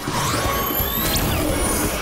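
Cartoon magical-transformation sound effects: whooshing, swirling sweeps and a sharp upward sweep about a second in, over a music score.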